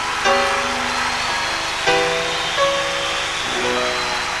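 Closing bars of a live ballad with no singing: held chords that change every second or so.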